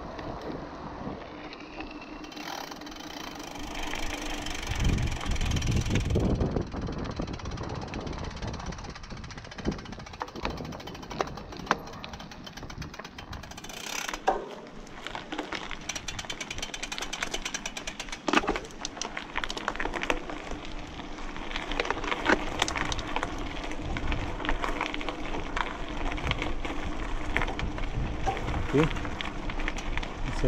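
Mountain bike riding on a dirt road and then a gravel path: tyres crunching over stones and the bike rattling, with the clicks coming thick and fast in the second half. A gust of wind on the microphone a few seconds in.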